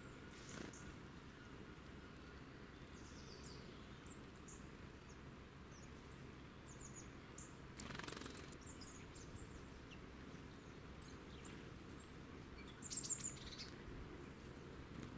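Small woodland songbirds calling faintly in short, high chirps over a low hiss. About eight seconds in there is a sharp click and a brief rustle, and a burst of louder chirps comes near the end.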